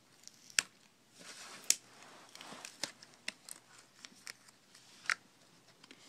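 Laptop keyboard and its ribbon cable being handled while fitted into the laptop: about five sharp clicks and taps of plastic and metal, with soft rustling between them.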